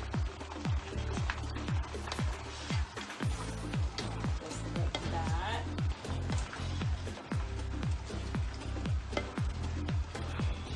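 Background music with a steady deep beat, about two beats a second. Under it, faint sizzling and a wooden spatula stirring fried fish pieces and onions in a frying pan.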